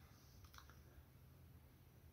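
Near silence: room tone, with a couple of faint small clicks about half a second in.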